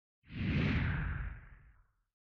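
Whoosh sound effect for a logo reveal. It rushes in a moment after the start with a low rumble underneath, then fades away over about a second and a half, sinking in pitch as it fades.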